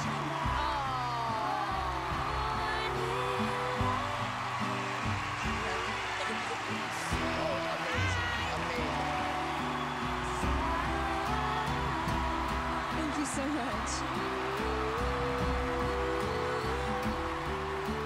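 Background music with sustained notes stepping in pitch, with voices over it near the start and again about eight seconds in.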